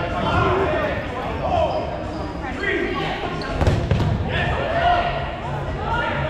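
Players' voices calling out in an echoing gymnasium, with the thuds of foam dodgeballs hitting the floor and players, loudest in a cluster about four seconds in.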